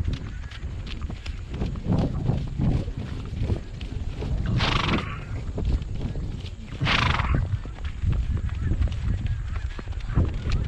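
Hoofbeats of a ridden horse moving along a dirt field track, with low wind rumble on the helmet-mounted microphone. Two short breathy blasts from the horse, about five and seven seconds in.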